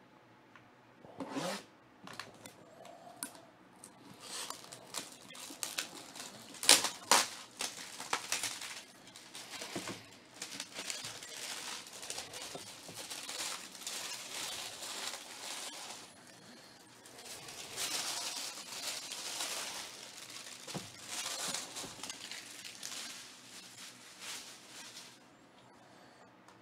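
Plastic shrink-wrap crinkling and tearing as it is stripped off a cardboard box, with irregular crackles and sharp snaps, loudest about seven seconds in.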